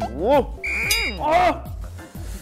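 Wordless voice sounds rising and falling in pitch over background music, with a short high electronic beep a little past half a second in.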